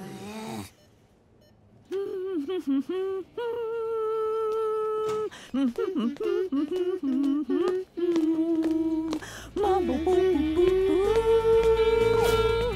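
A voice humming a meandering tune in short phrases with long held notes, joined by a low background music bed in the last few seconds.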